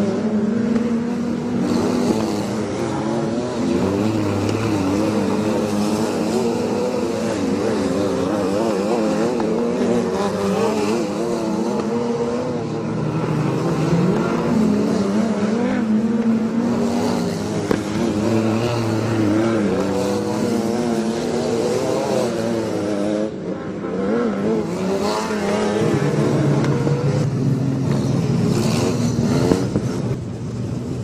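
Wingless sprint car engines racing on a dirt oval, their pitch rising and falling over and over as the cars go through the turns and down the straights.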